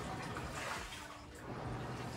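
Coin-laundry machines running: a steady low hum with an even rushing noise, a little louder in the first second.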